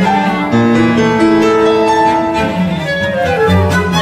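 Live chamber music: violin, cello and flute playing together in sustained, overlapping lines that shift pitch every second or so.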